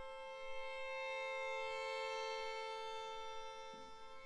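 Violin, with the other bowed strings, holding long sustained notes: two close pitches sound together unbroken, swelling a little mid-way and easing off near the end.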